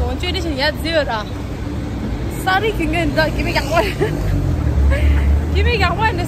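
A woman talking over the steady noise of road traffic on a busy street, with a deeper low rumble swelling for about a second and a half near the end.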